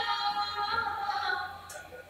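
Sufi music: one long held note, sung or played, that fades away near the end.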